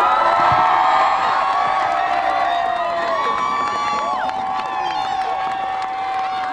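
Small group cheering and whooping, several long high-pitched yells overlapping, with hand clapping.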